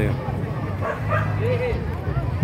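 A dog yipping and whimpering in short, arching cries, with a man's brief words at the start.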